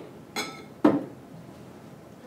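A glass beaker is set down upside down over a smaller beaker of burning isopropyl alcohol, giving two glass clinks about half a second apart. The first has a brief ring and the second is a sharper knock.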